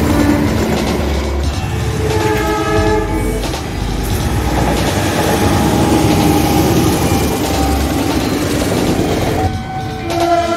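Diesel-electric locomotives passing at speed, a heavy rumble with wheel noise on the rails. A multi-tone train horn blast sounds about two seconds in, lasting a second or so, and another horn starts near the end.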